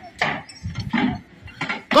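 Scattered metallic clanks and knocks as a steel lattice tower collapses to the ground.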